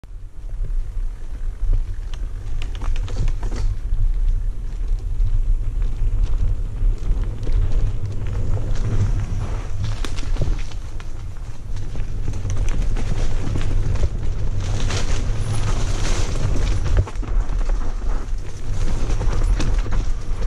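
Mountain bike rolling fast down a dirt forest trail: wind rumbling over the bike-mounted camera's microphone, with the bike rattling and clicking over bumps throughout.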